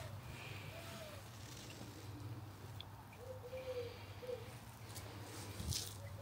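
Quiet garden ambience with a faint low hum and a few faint, low cooing bird calls, about a second in and again a little after the middle; the pressure washer is not running.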